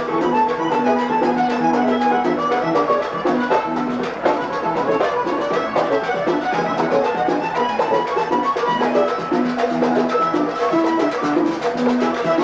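Live vallenato music: a diatonic button accordion playing a melody of held, reedy notes over a steady percussion rhythm, with no singing.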